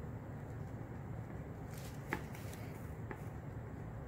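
Faint handling noise of fingers rubbing and turning a small plastic doll, with two light clicks about two and three seconds in, over a low room hum.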